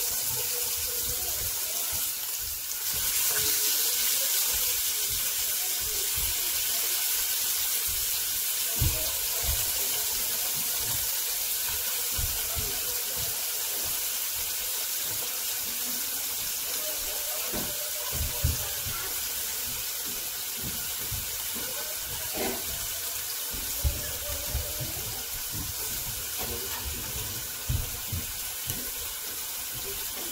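Marinated chicken pieces sizzling on a hot ridged electric grill pan as they are laid down one by one with tongs: a steady hiss with scattered soft knocks of the tongs and meat against the pan.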